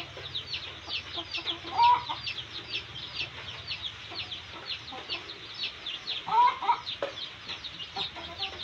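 Newly hatched chicks peeping, a dense run of short falling high-pitched peeps several times a second. Louder, lower calls stand out about two seconds in and again past six seconds.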